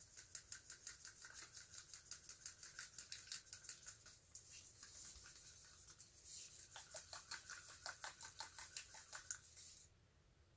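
Wooden craft stick stirring thinned acrylic pouring paint in a plastic cup: a faint, quick scraping, about five strokes a second, with a short let-up midway.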